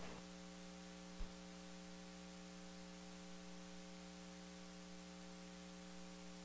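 Faint, steady electrical mains hum, a set of unchanging tones, with one soft click about a second in.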